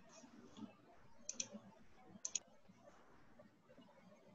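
Two quick double-clicks of a computer mouse, a second apart, over faint room noise.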